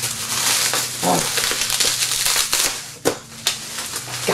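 Plastic bubble-wrap packaging crinkling and rustling as it is torn open with the teeth and handled, with a sharp crack about three seconds in.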